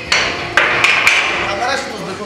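A heavily loaded barbell set down after a deadlift rep: the weight plates land and settle with a quick series of about four sharp knocks.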